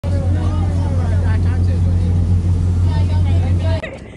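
Motorboat engine running steadily underway, a loud low drone mixed with the rush of wind and water, with voices faintly over it; it cuts off suddenly near the end.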